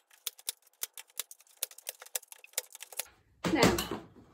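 Hand staple gun firing staples through compostable food trays into a wooden base, a rapid run of sharp clicks at about four a second. Near the end a louder, brief clatter.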